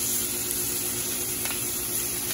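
Chicken leg and thigh pieces frying in olive oil in a sauté pan over a gas burner: a steady sizzling hiss as they crisp. A low steady hum runs underneath.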